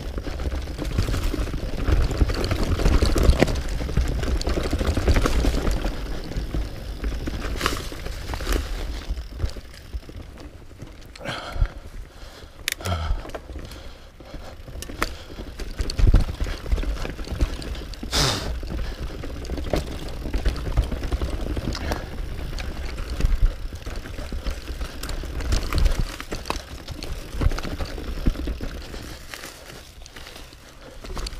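Mountain bike riding fast down a dirt and leaf-litter forest trail, heard from a camera on the rider: a steady rolling rumble of tyres and bike with a low wind rumble on the microphone. Sharp knocks from roots and rocks come through now and then, and the noise drops off for a few seconds about a third of the way in.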